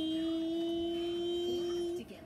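One steady pitched tone, held evenly for about two and a half seconds, then cut off sharply.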